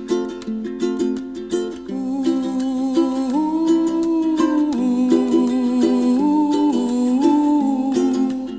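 Background music: a plucked-string accompaniment with a wordless hummed melody coming in about two seconds in and gliding between held notes.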